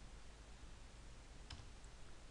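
Near silence with a single faint click at the computer about one and a half seconds in, the input that opens a search dialog.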